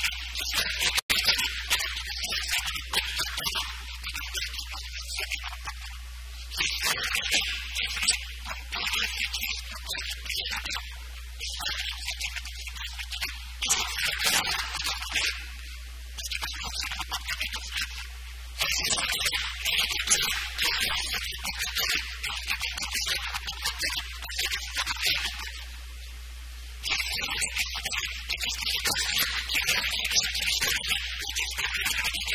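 A man's voice lecturing in phrases with short pauses, on a thin, hissy, poor-quality recording, over a steady low electrical hum.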